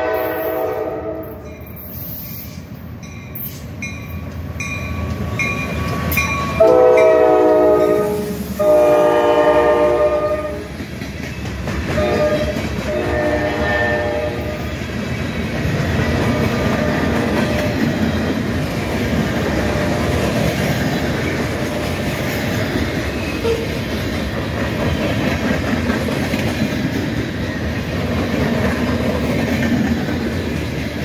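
Norfolk Southern freight locomotive sounding its air horn in a series of blasts as it approaches, the two loudest and longest about seven and nine seconds in and a weaker one just after. From about fifteen seconds on, its freight cars roll past close by with a steady rumble and wheel clatter on the rails.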